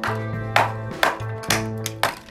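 Background music: held chords with a sharp percussive hit about every half second.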